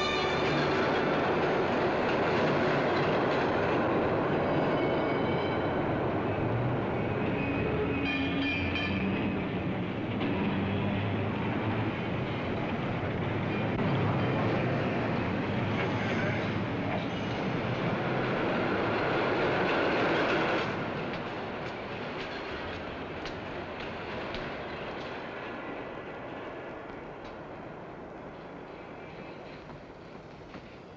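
Elevated railway train running past, loud and steady, then dropping sharply about twenty seconds in and slowly fading away.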